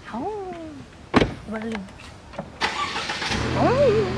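A Mercedes-Benz car door slams shut about a second in. Near the end the engine cranks, starts and settles into a steady idle, with short vocal exclamations over it.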